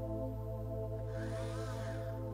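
Ambient background music of steady, held drone-like tones. A soft hiss rises briefly about a second in.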